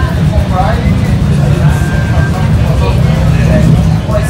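Motorcycle engines running steadily in a low rumble under the chatter of a crowd.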